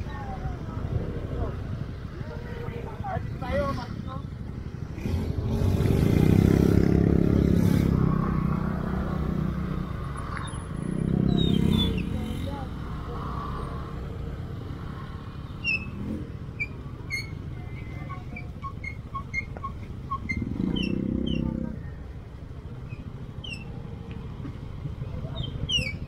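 Motor scooter engine running at low speed, with a steady low rumble, as the bike rolls along with a group of other scooters. The sound swells louder three times.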